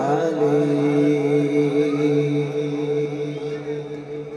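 Male naat reciter's voice holding one long chanted note through a microphone with heavy reverb, fading away near the end as the recitation closes.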